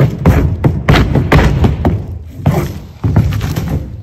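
A cast horse thrashing its way free, with a run of irregular heavy thuds as its legs and body strike the arena wall and the sandy ground while it heaves itself over.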